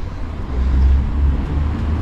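A low outdoor rumble with a faint hiss, swelling about half a second in and easing a little near the end.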